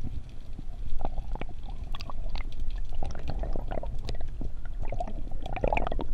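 Underwater sound through an action camera's housing: a constant low rumble of water with many scattered clicks and crackles.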